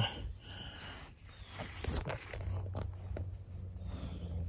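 Faint rustling with a few light ticks and scuffs as someone shifts about on leaf-littered ground and handles the camera, under a faint low hum.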